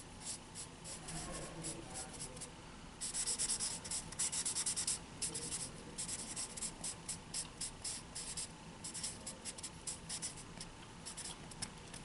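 Black felt-tip marker scratching across a paper easel pad in many quick, short strokes, with a dense run of strokes about three to five seconds in.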